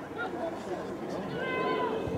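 Overlapping distant shouts and calls from children and adults on an open football ground, with a longer high-pitched call near the end.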